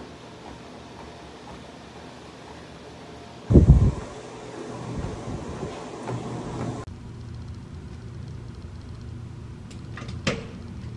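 Treadmill running with a steady mechanical hum. A single loud, heavy thump comes about a third of the way through. Later the hum drops to a lower, steadier drone.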